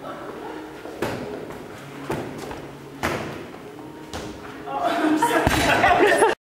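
A ball being hit in a throwing drill: four sharp thuds about a second apart, ringing in a large hall. Voices and laughter rise loudly near the end.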